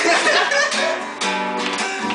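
Nylon-string classical guitar strummed, chords ringing, with a fresh stroke at the start and more strokes about two-thirds of a second and a second and a quarter in.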